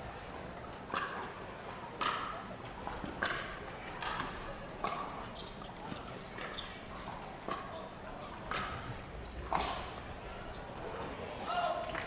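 Pickleball rally: a composite paddle striking a plastic pickleball back and forth, a string of sharp pops roughly one a second, stopping a little before the end.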